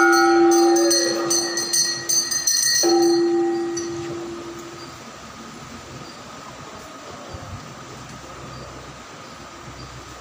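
A conch shell (shankh) blown in two long, steady blasts, the first breaking off just under three seconds in and the second fading out about five seconds in. Temple bells ring along during the first few seconds, then only a low background hum remains.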